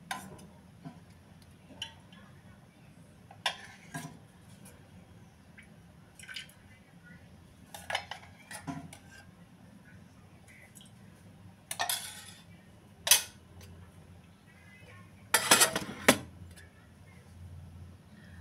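Stainless-steel kitchen containers and utensils clinking and clanking in scattered knocks as they are picked up and set down, with the loudest clatter near the end.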